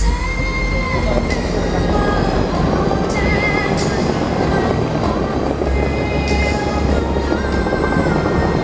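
Fountain-show music from loudspeakers over the steady rushing hiss of rows of water jets spraying into the air and falling back into the lake.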